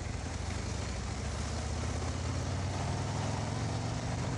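Harley-Davidson Road Glide's V-twin engine running at low revs as the bike rides along, a steady low throb that rises a little in the middle and eases near the end, over wind and road noise.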